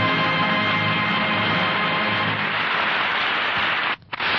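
Radio orchestra's musical bridge ending on a long held chord that fades out a little past halfway, giving way to a steady rushing noise.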